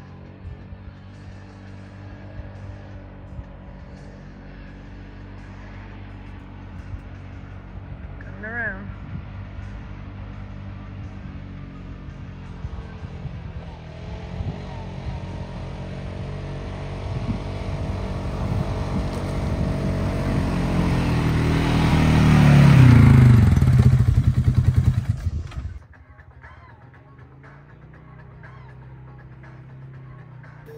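ATV engine running as the quad rides up a dirt trail, growing steadily louder as it approaches and loudest as it passes close by, its pitch dropping as it goes past; the sound cuts off suddenly near the end to a much quieter engine hum.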